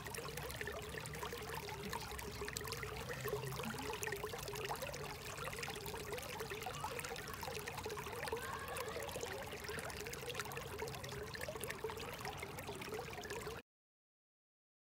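Shallow water flowing over stones in a narrow ditch: a steady babbling trickle with constant small gurgles. It cuts off suddenly near the end.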